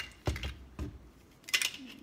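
Clicks and knocks of a black tripod easel being handled and its legs opened out. There is a dull knock about a quarter second in, another near the middle, and a short cluster of sharper clicks about a second and a half in.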